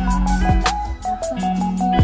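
Live band music with a drum kit keeping a steady beat under bass and held notes, loud and even.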